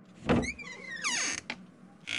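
A short sound effect: a brief knock, then a whistle-like tone that falls steadily in pitch over about a second, ending in a small click.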